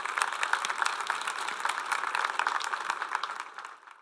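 Audience applauding, a dense steady patter of many hands clapping that fades out near the end.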